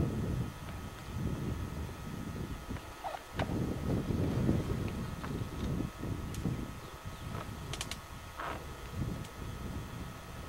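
Gusty wind rumbling on the microphone, with a few short bird calls: one about three seconds in and another near the end.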